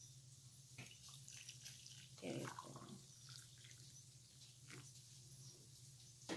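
Near silence: room tone with a low steady hum and a few faint clicks and knocks.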